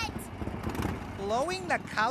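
A steady background hiss and low rumble, then about a second in a cartoon character's voice rising and falling in pitch.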